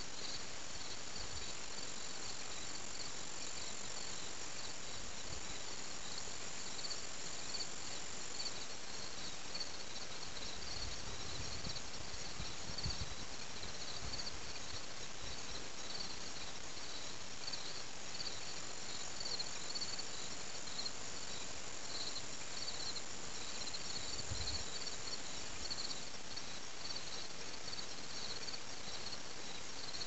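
A chorus of insects chirping outdoors, a high pulsing chirp repeating steadily, joined twice by a higher continuous trill lasting several seconds.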